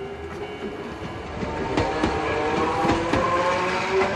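A train passing close by, getting louder about a second and a half in, with the clatter of wheels on the rails and steady tones over the rumble.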